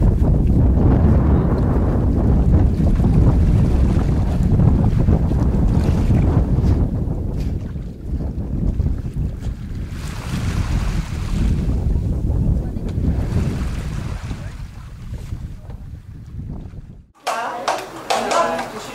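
Wind buffeting the microphone in a heavy, uneven low rumble over the wash of sea water. It eases off at times and stops abruptly near the end.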